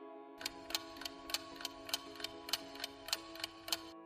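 Clock-style ticking sound effect, about three ticks a second, starting about half a second in, over a quiet held music chord: a quiz countdown timer running while the question waits for its answer.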